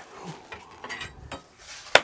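Light clinks and knocks of kitchen things being handled and set down on a countertop, with one sharp click just before the end.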